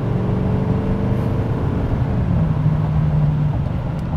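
2017 L5P Duramax 6.6-litre turbo-diesel V8 pulling under throttle, heard from inside the pickup's cab as a steady low drone over road noise, building boost. The drone breaks briefly about halfway through.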